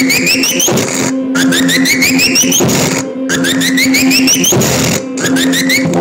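Experimental electronic synthesizer music: a steady low drone under repeating ladders of short rising chirps that step upward in pitch. The phrase repeats about every two seconds, each ending in a short noisy swell and a brief break.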